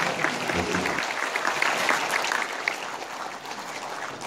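Audience applauding: dense, steady clapping that eases off slightly toward the end.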